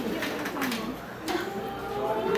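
A man talking into a handheld microphone, his voice carried through the hall's PA, with a short pause about a second in.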